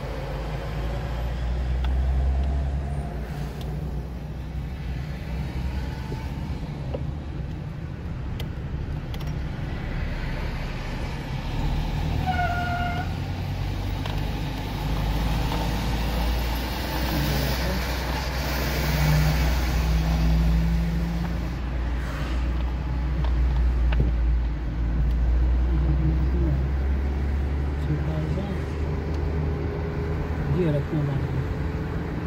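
Car driving along a road, heard from inside the cabin: a steady low rumble of engine and tyres that swells and eases with speed. A short beep sounds about halfway through.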